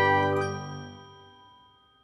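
Closing chord of a short animated logo jingle: a held, ringing chord that fades away over the first second and a half.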